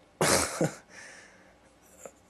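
A man coughs once, a short harsh burst near the start, followed by a faint breath.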